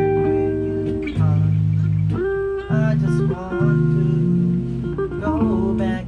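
Electric guitar and electric bass guitar playing together. Held bass notes change every second or so under the guitar's chords and single notes.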